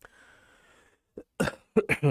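A man coughing into his fist: a faint breath, then one small cough and a quick run of three louder coughs in the second half.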